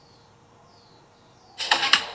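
Music played through a homemade fly-swatter amplifier and bare loudspeaker breaks off, leaving faint hiss with a few faint high whistles, then the music starts again about one and a half seconds in.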